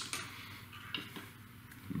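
A couple of faint clicks about a second in, as a small precision screwdriver with a metal shaft is set down on a hard work surface.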